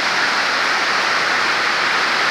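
Heavy rain falling, a steady loud hiss with no break.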